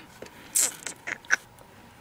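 A hand pressing and rubbing a freshly glued paper layer flat onto a cardstock pocket, giving a few short soft rustles and scrapes of skin on paper.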